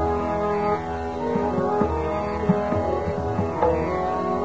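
Hindustani classical music in raga Yaman Kalyan: a steady drone with melodic accompaniment and scattered tabla strokes.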